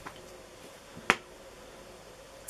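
A single sharp click about a second in, with a fainter click at the start, over quiet room tone.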